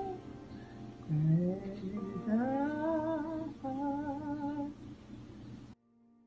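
A woman's voice humming a slow, wordless melody in gliding phrases, which cuts off suddenly near the end.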